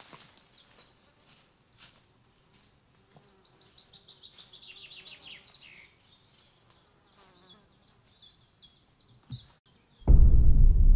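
Faint woodland birdsong: a quick trill of high notes stepping down in pitch about four seconds in, then a run of short repeated high notes. A soft low knock comes near the end.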